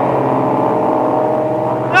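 A steady low pitched drone, holding one pitch without rising or falling.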